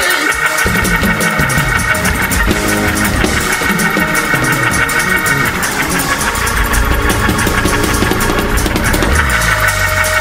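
Organ playing held chords over shifting bass notes, the upper chord dropping away about halfway through and coming back near the end.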